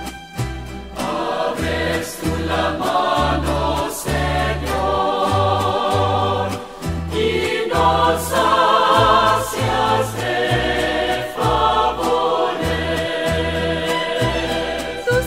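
A Spanish Catholic psalm song: a choir singing over instrumental accompaniment with a steady, stepping bass line.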